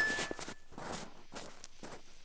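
Close-miked scratching and crackling of a thin ear-cleaning probe working inside an ear canal, a quick run of small scrapes that thins out towards the end. A brief thin high tone sounds at the very start.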